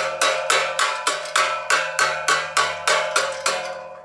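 A hammer tapping rapidly on duckbill pliers clamped onto a sheet-metal edge: about four ringing metallic strikes a second, fading out near the end. The tapping drives the pliers to give a sharper bend in the sheet metal.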